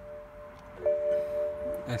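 A car's electronic warning chime: a bell-like tone. One is dying away at the start, and a fresh one is struck a little under a second in and rings steadily for about a second.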